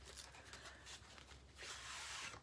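Faint handling of a cardboard eyeshadow palette box being opened, ending in a short scraping rustle near the end as the palette is slid out of the box.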